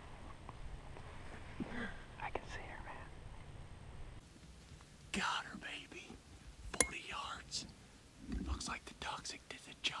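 A man whispering in short phrases, with one sharp click about two-thirds of the way in.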